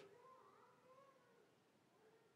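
Near silence: faint room tone, with a very faint wavering tone in the first half.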